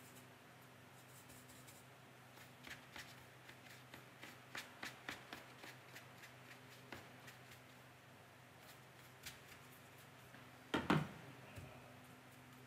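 Faint soft scratches and ticks of a watercolour brush laying paint onto textured paper, coming in a quick run for a few seconds. Near the end, a louder brief double knock as the brush goes back to the palette.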